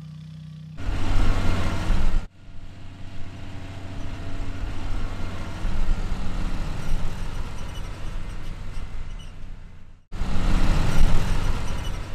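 Tractor engine running, heard in spliced sections: louder for a second and a half starting about a second in, then a steadier, quieter run, and louder again over the last two seconds.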